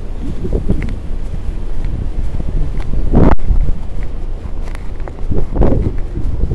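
Wind buffeting and jacket fabric rubbing on a camera microphone carried in a breast pocket, over a low rumble of street traffic. Just past three seconds in there is a louder swell that cuts off abruptly in a brief dropout.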